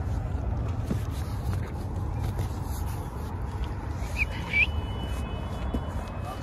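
Street traffic rumble, steady and low, with two short high chirps about four seconds in.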